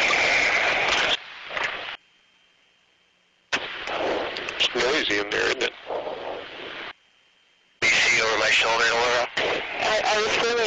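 Crew intercom audio cutting in and out abruptly: noisy, crackling stretches with clicks and muffled voices, broken twice by dead silence, once early on for about a second and a half and again briefly near the end.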